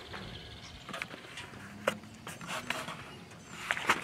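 Quiet lakeside air with a few faint, scattered clicks and knocks, from footsteps on the wet boat ramp and a handheld camera being moved.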